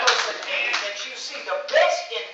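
Scattered applause from a small seated audience, hands clapping that thin out over the first second or so. A man's voice comes in briefly near the end.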